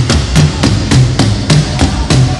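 Live rock band instrumental: an even, rapid run of sharp drum hits, about five a second, over a pitched bass line.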